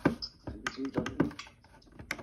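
A few short, sharp plastic clicks and taps as an old Radio Shack 12-240 weather radio and its plug end are handled and its buttons fingered.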